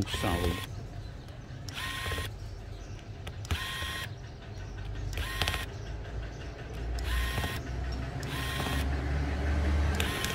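A handheld electric air blower fired in short blasts, about six times, each a half-second rush of air with a faint motor whine. A low hum runs underneath.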